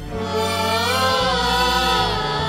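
A man singing a Tamil film-song melody into a microphone over a live band's accompaniment, the sung line gliding and bending in pitch over steady low keyboard notes; the voice comes in just after a brief dip at the start.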